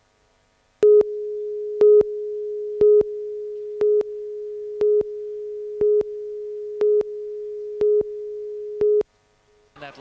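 Videotape countdown leader: a steady test tone with a louder beep once a second, nine beeps, starting about a second in and stopping about a second before the end.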